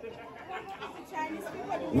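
Low background chatter of several guests talking at once in a room, heard between the MC's microphone lines.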